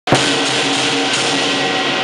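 Chinese lion dance percussion: a big lion dance drum with clashing cymbals, playing continuously and loudly, with ringing metal tones over the beat.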